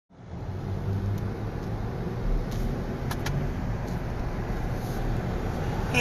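Steady low rumble of a car heard from inside the cabin while driving, with a few faint light clicks in the first half.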